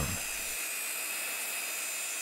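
Bosch hand-held circular saw with a dust extractor attached, running at speed with the blade not yet in the wood: a steady, even whine.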